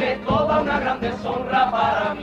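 A carnival comparsa choir singing a pasodoble in several voices, holding long notes that waver in pitch, with a few low beats from the accompaniment.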